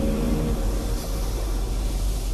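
A low, steady rumble, with faint held tones that fade out early in the first second.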